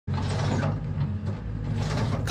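Tracked skid steer running steadily as it drives forward with a Rockhound power rake attachment, its engine hum mixed with mechanical rattle from the machine.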